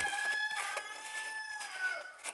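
A rooster crowing: one long drawn-out call that dips slightly lower as it ends.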